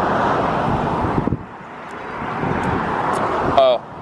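Passing road traffic: a rushing noise that swells, dips after about a second, then builds again as another vehicle goes by.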